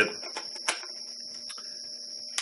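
Two faint sharp clicks of a camera body and a metal lens being handled, over a steady low hum and a high-pitched whine in the room.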